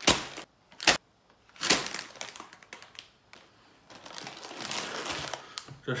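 Plastic instant-noodle packets being handled and set down on a tabletop. A few short crinkles and knocks come in the first two seconds, then a longer stretch of crinkling.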